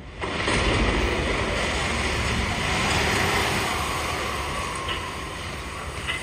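A loud, steady rushing noise with a deep rumble underneath, cutting in abruptly just after the start and easing slightly toward the end: a sound effect in a stage show's soundtrack.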